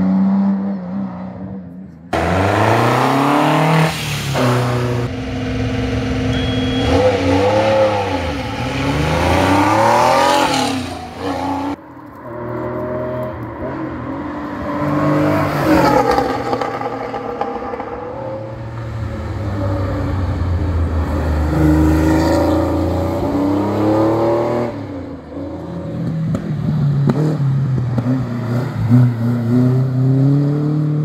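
Historic competition cars accelerating hard uphill past the listener one after another, among them an air-cooled Porsche 911 flat-six. Each engine's pitch climbs and drops again and again as the car revs through the gears. The sound cuts abruptly to a new car about two seconds in and again about twelve seconds in.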